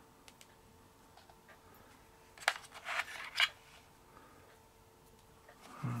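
Quiet room with a faint steady hum. About two and a half seconds in comes a quick cluster of light clicks and rustles, lasting about a second, as a small metal key ring is set down on a wooden table and the flashlight is lifted out of its plastic packaging tray.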